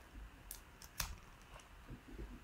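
A few faint, short clicks and rustles of fingers handling a piece of blotting paper, the loudest about a second in.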